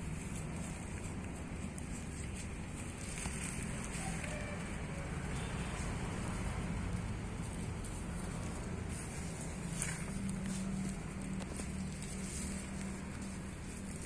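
Fingers picking and crumbling moist soil away from a bonsai's root ball: a faint, steady crackle of small ticks over a low background hum.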